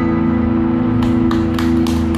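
Electric and acoustic guitars sustaining a held chord, the band's ensemble letting it ring out at the end of the song. Scattered sharp clicks come in from about a second in.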